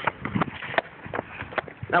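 Footsteps on an asphalt street, sandals and shoes slapping in a run of irregular sharp taps.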